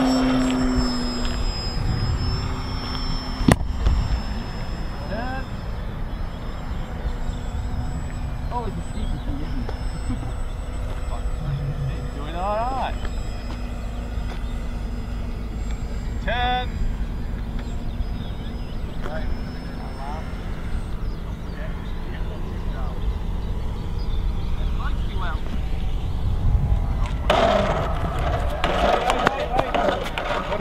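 Radio-controlled model aircraft's motor and propeller running: a strong steady drone with a high whine that drops away about a second in, then a faint distant hum that fades out about twenty seconds in. Low wind rumble runs underneath, and a sharp click comes a few seconds in.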